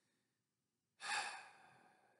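A man's single breath, about a second in and lasting about half a second, in an otherwise near-silent pause in his talk.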